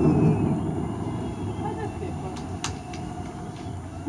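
Low rumble of distant fireworks bursts rolling in from over the sea, fading away, with one brief sharp crack about two-thirds through.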